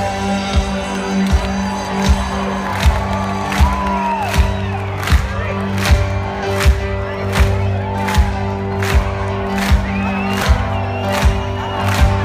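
Live band music heard from within an open-air concert crowd, with a steady beat about every three quarters of a second and held low notes underneath. The crowd cheers and whoops over the music.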